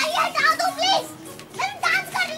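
A child's high-pitched voice calling out through the first second, pausing, then calling again near the end.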